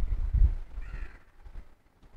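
A low wind rumble on the microphone in the first half second, then a single short bird call about a second in.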